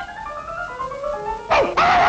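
Cartoon orchestral score plays short stepping notes, then about three-quarters of the way through a puppy's loud, drawn-out bark breaks in suddenly over the music.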